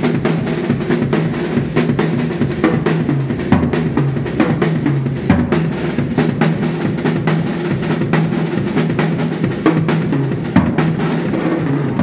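Acoustic drum kit playing a fast, busy two-bar linear groove: hand strokes fall between bass drum kicks, with quick double strokes and runs around the toms.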